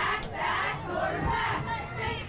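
Football crowd shouting and cheering, many voices overlapping at once.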